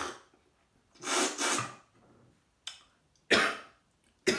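A man coughing after tea went down the wrong way: two coughs about two seconds apart, the second sharper and louder.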